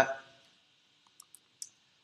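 Four faint, sharp clicks of a computer mouse, spread over about half a second starting about a second in, as the tail of a man's voice fades out.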